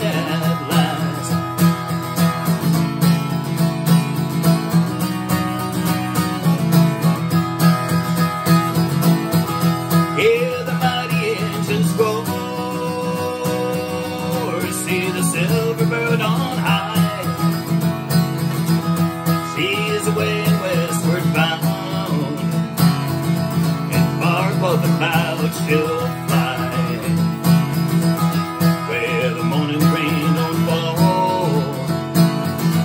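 Capoed acoustic guitar strummed steadily in a country-folk style, with a man singing several phrases over it from about a third of the way in.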